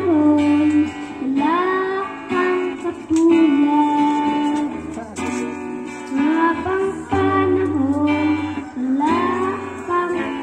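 A child singing into a microphone over instrumental backing music, the melody rising and falling phrase by phrase.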